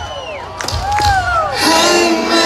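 Live band's vocal harmonies through a concert PA, heard from among the audience: the voices break off early, whoops and whistles from the crowd glide up and down in the short gap, and the harmonies come back in about one and a half seconds in.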